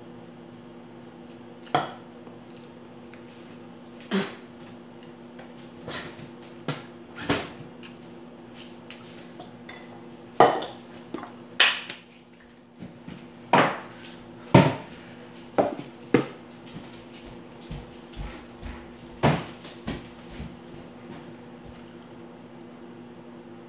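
Irregular sharp knocks and clacks of a wooden pepper mill and other small objects being handled and set down on a stone countertop, about a dozen in all, loudest around the middle. Under them runs the steady hum of a microwave oven heating.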